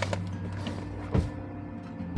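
Groceries being packed into a cardboard box in a car boot: handling sounds with a sharp knock a little over a second in, over faint background music.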